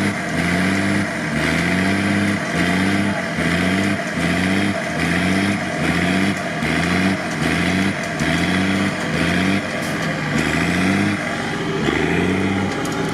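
The engine of a Mercedes-Benz Unimog stuck in deep mud, working hard under load while it is winched out. Its pitch rises and drops back in a steady rhythm about one and a half times a second as the wheels spin and dig in.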